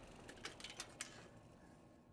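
Near silence, with a few faint short clicks in the first second or so, then fading out.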